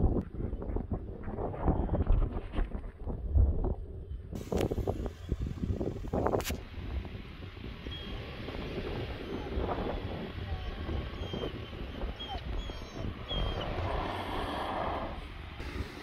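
Wind buffeting the microphone over the low, slow running of a Ford Ranger Tremor pickup's 2.3-litre EcoBoost four-cylinder as it crawls through a rutted sandy dip towing an off-road trailer. The sound changes abruptly about four seconds in.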